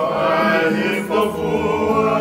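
Group of men singing a song together in harmony, accompanied by strummed acoustic guitars.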